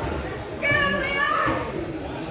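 A high-pitched shout from a spectator, likely a child, held for about a second starting about half a second in, over crowd chatter in a large hall.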